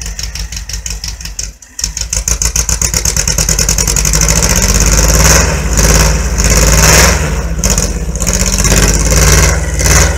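VW Beetle's air-cooled flat-four engine running loud with a rapid, even firing beat. It drops out for a moment about a second and a half in, then is revved up and down several times, loudest past the middle and again near the end.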